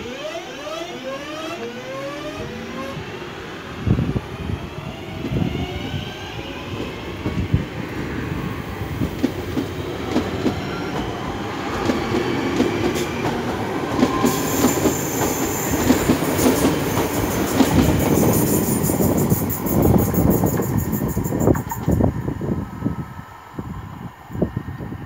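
Class 323 electric multiple unit pulling away from a station. Its traction motors whine, rising in pitch over the first few seconds. The wheels then rumble and clatter over the rail joints as the carriages pass close by, and the sound falls away near the end as the train draws off.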